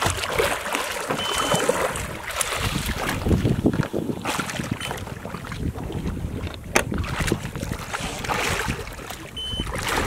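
Water splashing and churning as a hooked nurse shark thrashes at the surface beside the boat's hull, with wind buffeting the microphone.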